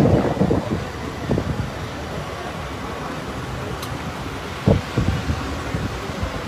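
Wind buffeting the microphone in a steady rush, with a few low gusts about a second in and again near the end.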